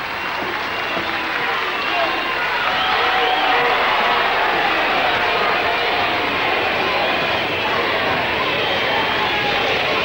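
Wrestling crowd cheering and applauding a fall just scored, a steady din of many voices and clapping that swells slightly about two seconds in.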